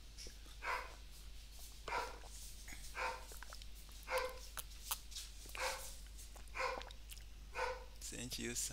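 A dog barking in single barks, about once a second, some seven barks in all.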